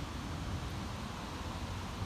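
Steady outdoor background noise: a low rumble with a faint hiss and no distinct events.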